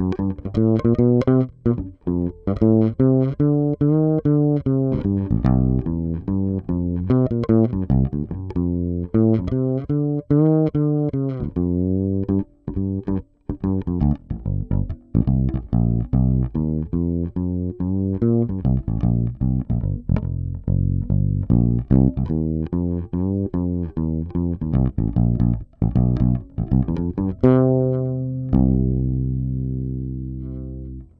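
Homemade fretless electric upright bass, fingers plucking a run of notes through its custom-made pickup, with slides in pitch between notes. A long note near the end rings on as it fades. The run is played by ear, so the intonation is not exact.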